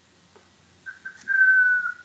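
A person whistling: a couple of short notes about a second in, then one longer note that falls slightly in pitch.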